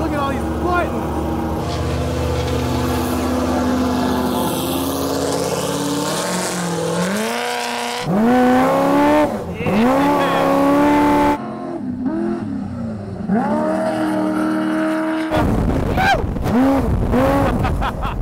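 Desert trophy truck's engine heard from inside the cab, revving hard and repeatedly climbing in pitch then dropping as it accelerates and shifts around the course. The sound changes abruptly a few times.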